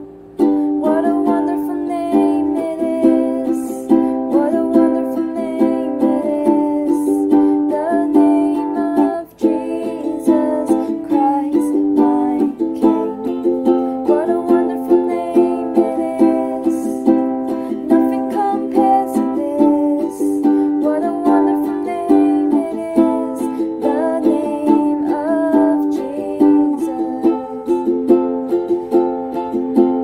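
Ukulele strummed in a steady rhythm, with a voice singing a worship song over the chords; the strumming breaks off briefly about nine seconds in.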